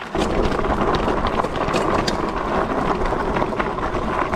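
E-bike tyres rolling over a loose gravel and dirt trail: a steady rough rumble with scattered crunches and clicks that starts abruptly, mixed with wind noise on the handlebar camera's microphone.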